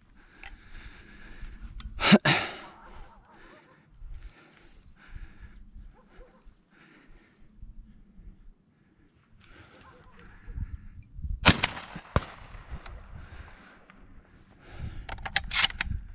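Shotgun reports at a thrush shoot: a loud bang about two seconds in, a sharp crack with a smaller one right after it around eleven and a half seconds, and several sharp cracks near the end. Faint short sounds fill the gaps between.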